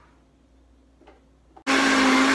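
A quiet stretch, then a Vitamix blender's motor starts abruptly, about three-quarters of the way in, and runs loud and steady with a strong hum, blending soup.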